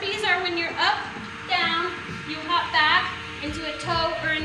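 A woman's voice.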